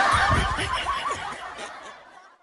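Snickering laughter that fades away over the two seconds.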